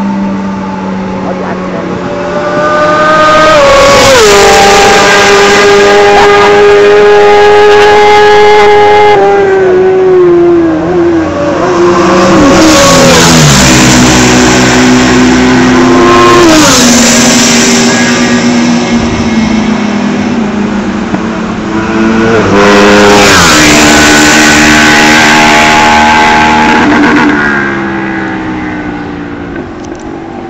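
Several sport motorcycles pass at racing speed one after another, very loud, each engine note dropping sharply in pitch as the bike goes by. The sound fades near the end.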